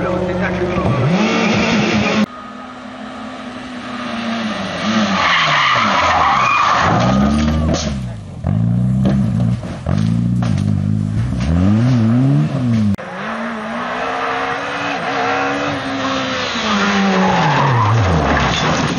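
Racing car engines revving hard, their pitch rising and falling again and again through gear changes and lifts, with tyres skidding and people's voices. The sound changes abruptly several times as a different car takes over.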